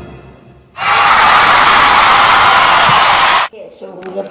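A loud, harsh vocal noise starting about a second in, held for nearly three seconds and cutting off suddenly.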